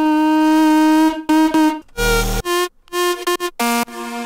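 Synthesizer music playing back: a single held, buzzy synth note for just over a second, then a run of short, chopped synth notes, with a deep bass hit about halfway through.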